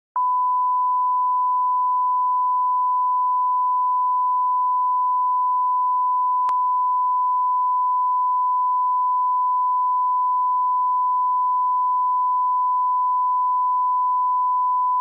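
Television line-up test tone: one steady, unbroken high beep at a fixed pitch, sent with the colour bars before a broadcast begins.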